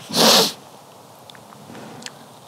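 A single short, sharp breath from the man near the start, then quiet, with a few faint crackles from the small wood fire in the stove.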